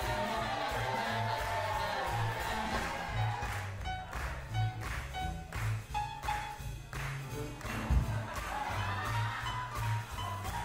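Live swing jazz band playing: a steady beat from upright bass and drums under horn lines, with a run of short accented hits in the middle.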